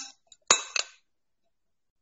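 Metal spoon clinking against a glass mixing bowl twice, about half a second in, as cauliflower florets are tossed.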